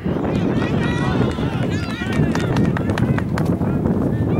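Wind rumbling on the microphone, with short shouts and calls from players and spectators over it.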